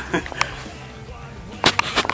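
A few sharp clicks or snaps: two faint ones early, then a quick run of four loud ones near the end, over a steady low hum.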